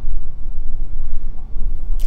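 Road noise of a moving car heard from inside the cabin: a steady low rumble.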